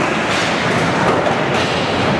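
Skateboard wheels rolling on a smooth indoor skatepark floor, a steady rumble.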